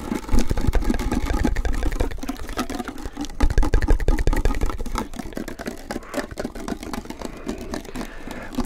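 Rapid tapping and rubbing on a small metal tin can held right up to the microphones, a fast stream of tinny clicks. Heavy low handling thumps come in twice, near the start and again a few seconds in, loudest there.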